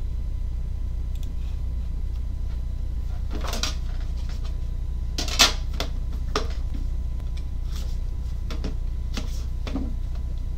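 A metal trading-card tin being opened and a card box lifted out and handled: a few separate knocks and scrapes of the tin and box, the loudest a sharp clack about five and a half seconds in, over a steady low hum.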